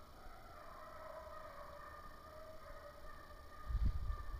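Walker hounds bawling on a running deer's trail: long, drawn-out, slightly wavering howls that carry on without a break. A low rumble comes in near the end.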